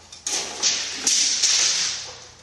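Dry scraping and rubbing in about four strokes, from drywall being handled and fitted against wood framing.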